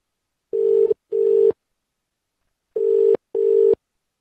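Telephone ringback tone heard down the line while an outgoing call waits to be answered: two double rings, each a pair of short steady tones, about two seconds apart.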